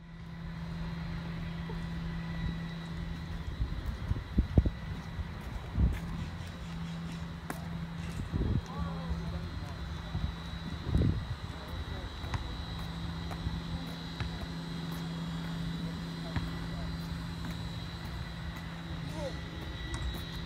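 Outdoor ambience: a steady low engine-like drone, with a few dull thumps and faint distant voices.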